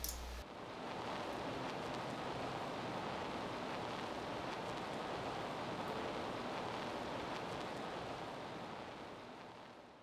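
Steady, even hiss of background noise with no distinct events, fading out near the end.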